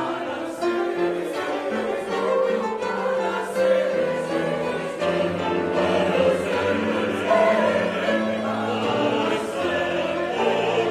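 Mixed church choir of men's and women's voices singing sacred music in several parts, with held notes.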